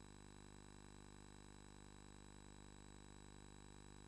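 Near silence: only a faint, steady hum with several high, unchanging tones, and no game or crowd sound.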